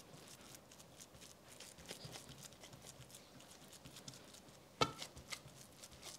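Faint soft pats and squishes of gloved hands pressing raw ground-meat kofta mixture flat in a glass baking dish, with one sharper knock a little before the end.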